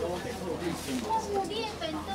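Chatter of several people talking at once, their conversations overlapping so that no single voice stands out.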